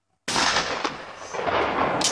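A break-action shotgun fired once at a clay target about a quarter second in, the report ringing on and echoing for over a second, with a fainter sharp crack about half a second after the shot.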